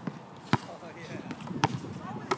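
A basketball bouncing on a hard court: two sharp bounces about a second apart.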